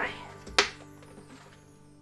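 One sharp plastic snap, about half a second in, from the green lid of a joint compound bucket being pried open by hand, over soft background music.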